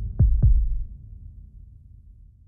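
Outro logo sound effect: two deep thumps about a quarter second apart, followed by a low rumbling tail that fades away.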